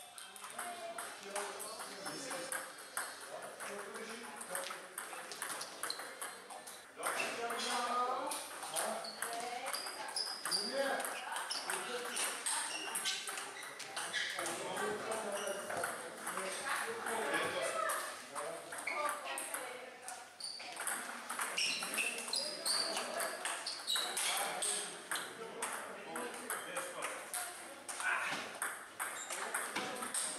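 Table tennis ball clicking back and forth between paddles and the table in rallies: runs of sharp, quick clicks with short gaps between points.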